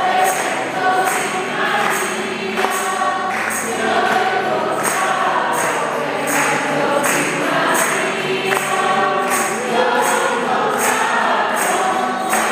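A congregation singing a hymn together, with a steady high percussive beat about twice a second.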